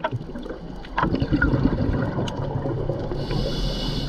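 Scuba diver breathing through a regulator, heard underwater. Exhaled bubbles rumble and gurgle from about a second in, then a hissing inhalation comes near the end, with scattered sharp clicks throughout.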